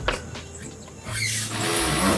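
Painted sheet-metal valley panel being set onto the caulked lap of another valley piece: a light metallic tap at the start, then a scraping hiss of metal sliding over metal for about the last second.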